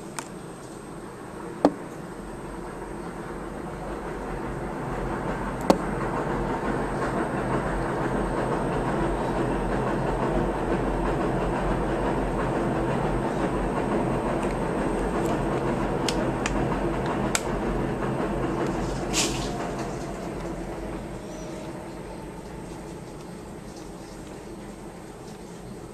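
A low rumbling noise swells over several seconds, holds, then fades away near the end, with a few sharp clicks scattered through it.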